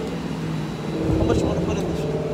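A BMW's loud engine driving by at a steady note, getting louder about a second in.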